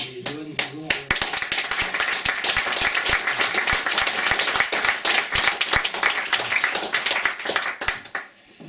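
Small audience applauding. A burst of clapping starts about a second in, holds steady, and stops just before the end.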